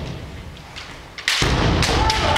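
Kendo bout: bamboo shinai knocking and bare feet stamping on a wooden gym floor. After a quieter first second, sharp knocks come suddenly about 1.3 s in, over a heavy low thudding.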